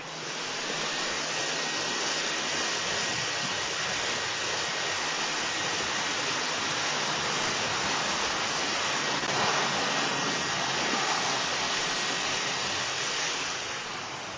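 Steady rushing hiss of air that switches on suddenly and runs without a break: the blower inflating an IcePro roof-edge sleeve so that it swells and breaks off the ice and snow.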